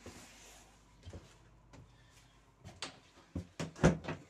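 A brief hiss, then scattered clacks and knocks that grow sharper and louder toward the end, with the loudest just before it stops. These are hard plastic fittings in a train's toilet compartment being handled.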